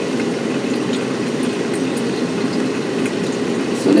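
Hot water poured in a steady stream from a stainless drip kettle onto coffee grounds in a paper drip filter, with the brew running down into the glass jug below: a steady, low-pitched watery noise.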